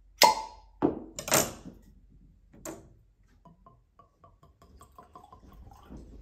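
Cork stopper of a bourbon bottle twisted and pulled free with a squeak and pop, with a knock or two in the first second and a half. Bourbon is then poured from the bottle into a glass, giving quick light glugs from about halfway in.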